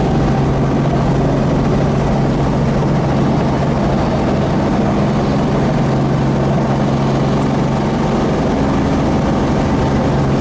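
Robinson R44 helicopter's piston engine and rotors running with a loud, steady drone, heard from the cabin as it hovers down and settles onto the landing pad.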